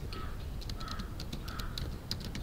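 Computer keyboard keys clicking in a quick run as a word is typed, with a bird's harsh call repeated three times in the background.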